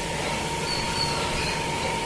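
Steady mechanical hum with a constant thin whine, and a few faint high chirps about a second in.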